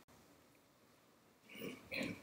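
Near silence in a pause of speech, with a faint short breath near the end.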